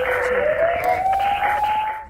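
TV news logo-ident sound effect: a whooshing swell carrying a single tone that glides upward in pitch, fading out near the end.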